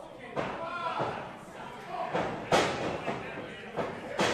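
Wrestling ring taking a loud thud about two and a half seconds in and a smaller one near the end, as the wrestlers move across the canvas, with voices in a large hall.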